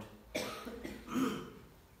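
A man coughing twice, a short cough about a third of a second in and a louder one just over a second in.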